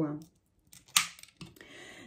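Glass perfume bottles knocking together as they are moved and set down: one sharp click about a second in, with a few fainter ticks around it.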